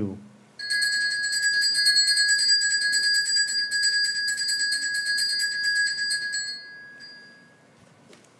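Altar bells shaken rapidly for about six seconds, a bright steady ringing that marks the elevation of the consecrated host; it stops and dies away over about a second.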